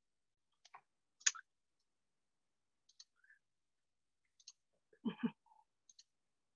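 Faint, sparse clicks at a computer while a presenter starts sharing a screen, one sharper click about a second in. Near the end come two short, soft knocks.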